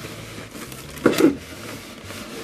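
Cardboard box flaps and a clear plastic parts bag rustling and crinkling as a toy box is unpacked by hand, with one louder burst of handling noise about a second in.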